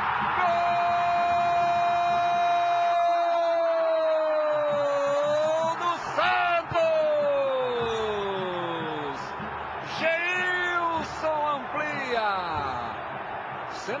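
Football TV commentator's drawn-out goal shout, a single held note of about five seconds, then a second long call falling in pitch and shorter cries, over stadium crowd noise.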